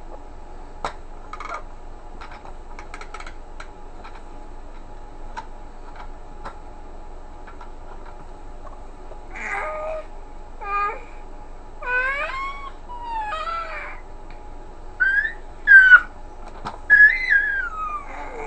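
Baby vocalizing: short gliding coos and squeals begin about nine seconds in, building to loud high-pitched squeals near the end. Faint clicks of the plastic toy being handled come before.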